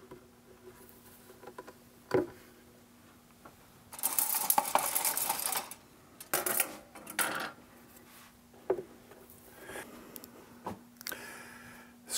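Go bars being sprung into place on a go-bar deck to clamp guitar braces during glue-up: a sharp click about two seconds in, then bursts of light clattering and rattling of thin rods against wood.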